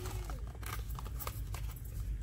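A few light clicks and taps of a small cardboard bar-soap box being pulled from a store shelf and handled, over a steady low rumble.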